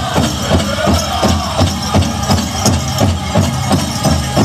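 Pow wow drum group playing a grand entry song: a large drum struck in unison in a steady beat, about three beats a second, under the group's high singing.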